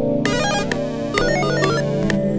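A looping synth melody with steady ticking about twice a second, overlaid by a bright, fast-stepping arpeggiated synth patch from Omnisphere being auditioned in two short runs.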